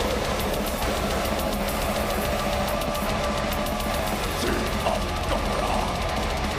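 Blackened death metal band playing live at full volume: distorted electric guitars over fast, dense drumming with constant cymbal hits.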